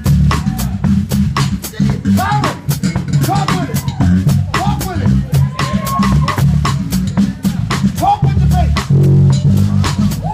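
Live electric bass and drum kit playing together: a busy bass line of quickly changing low notes under an even run of cymbal and drum strokes.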